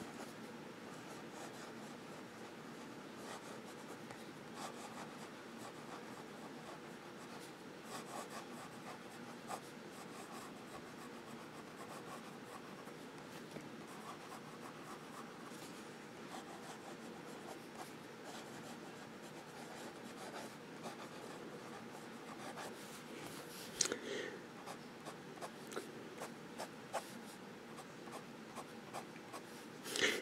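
Nib of a Noodler's Tripletail fountain pen writing cursive across paper: a faint, soft scratching of pen strokes with small ticks, from a smooth, wet nib used with no pressure. One sharper tick comes near the end.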